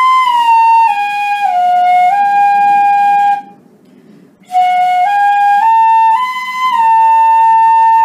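Pífano, a Brazilian side-blown fife in C, playing a slow left-hand finger exercise. Two five-note phrases are separated by a short breath: the first steps down four notes and back up one, and the second steps up four notes and back down one. Each phrase ends on a held note, and the tone is clear.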